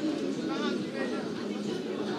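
Voices from a group of children on the pitch: short high calls and shouts over general chatter.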